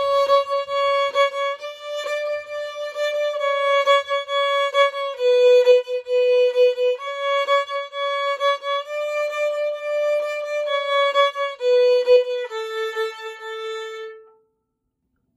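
Solo violin played fiddle-style with shuffle bowing, a long bow then two short bows, giving a steady pulsing rhythm to a simple old-time melody played on the A string, starting from C-sharp. The tune ends on a lower held note near the end.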